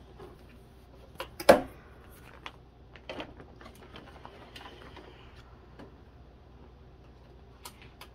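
Clear plastic binder pocket pages crackling and rustling as they are flipped and handled, with a sharp plastic snap about one and a half seconds in and smaller clicks and crinkles around it.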